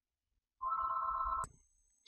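A telephone ringing once briefly with a warbling electronic tone, starting about half a second in and cut off abruptly by a click.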